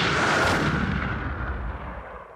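Intro sound effect: a deep, noisy boom that swells about half a second in and then slowly fades away.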